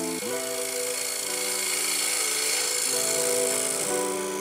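A 19 mm straight scraper cutting a dovetail tenon into a bowl blank spinning on a wood lathe, making a steady high hiss as shavings come off. The hiss stops just after the end. Background music with held chords changing about once a second plays throughout.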